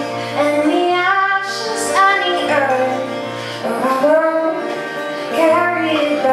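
A woman singing a slow melody with long held notes, accompanied by her own acoustic guitar.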